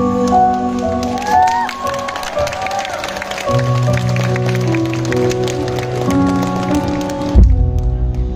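Live band playing the instrumental close of a ballad: held keyboard chords with electric guitar. It ends on a loud low final hit near the end, after which a soft keyboard chord rings on.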